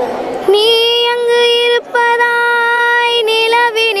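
A young girl singing a Tamil light song (lalitha ganam) unaccompanied, holding two long steady notes, then a wavering ornamented run near the end.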